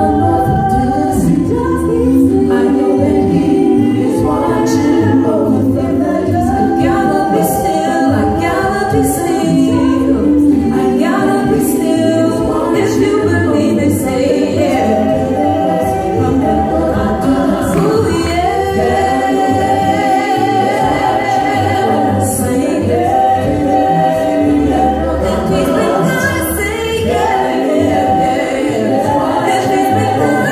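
A small vocal group singing a gospel song a cappella into hand microphones, several voices in harmony under a lead voice.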